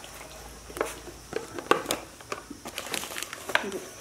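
A thin plastic bag crinkling as it is handled inside a plastic storage box, with a few light, irregular clicks of plastic.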